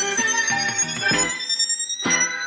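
Intro of an instrumental hip-hop type beat: a soulful sampled melody playing without drums, with a thin high tone slowly rising over it.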